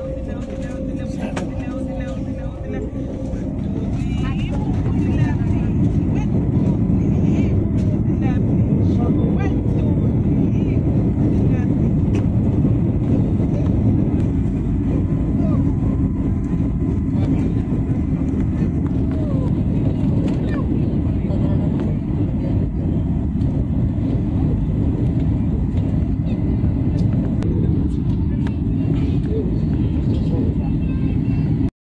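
Airbus A320-family airliner's jet engines at takeoff thrust, heard inside the cabin as a loud, steady rumble. It builds over the first few seconds as the engines spool up, with a short rising whine, then holds through the takeoff roll and liftoff.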